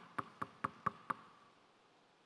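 Knuckles knocking on a wooden pulpit in a steady run of about four knocks a second, stopping just over a second in, acting out a knock at a front door.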